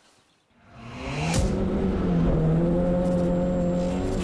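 Car engine revving up and then held at steady high revs, with a short sharp crack as the revs reach their peak.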